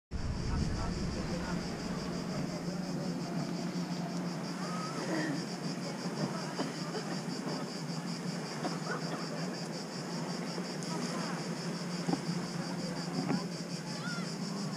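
A chorus of cicadas buzzing in steady, even pulses, over a low steady hum and faint scattered voices of people on the beach.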